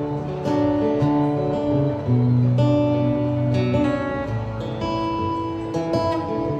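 Live instrumental music: a violin bowed in long held notes with strummed chords underneath, the chords changing every second or so.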